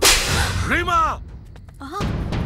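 A sudden loud whip-like swish hit from a film soundtrack, fading over about half a second. About a second in comes a short pitched cry that rises and falls, and a brief pitched fragment follows near the end.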